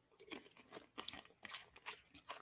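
Faint, irregular crunching clicks close to the microphone, several a second.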